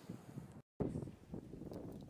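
Faint outdoor ambience with wind buffeting the microphone, cut by a moment of dead silence at an edit about two-thirds of a second in.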